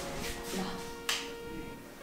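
Soft background music with held notes. About a second in there is a single sharp click as a wall switch turns on the LED strip lighting of a bed niche.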